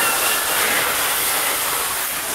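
House fire burning at close range: a steady rushing hiss with no distinct cracks or knocks.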